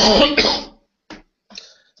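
A man coughing into his fist: two quick coughs right at the start, then a short faint click.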